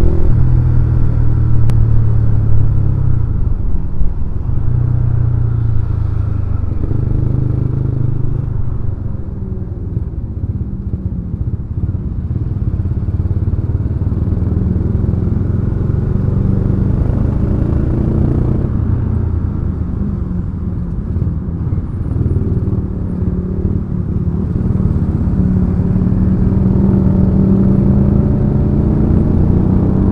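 Yamaha Scorpio's 225 cc single-cylinder four-stroke engine running while under way, heard from the saddle. Its note rises and falls several times with the throttle, over a steady road rumble.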